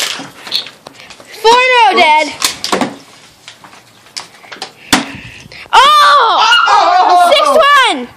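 High-pitched excited cries of "oh" from a young player: a short one about one and a half seconds in and a long drawn-out one over the last two seconds. Between them, a sharp knock about five seconds in, from a flipped plastic water bottle hitting the metal cabinet top.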